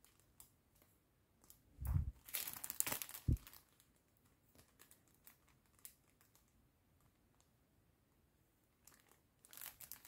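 Crinkling of a clear plastic sticker-pack sleeve being handled, loudest from about two to three and a half seconds in with two soft thumps, then a few faint ticks, with the crinkling starting again near the end.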